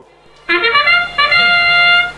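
FRC field's match-start sound, a trumpet-like fanfare signalling the start of the match: a few short notes stepping upward, then one long held note.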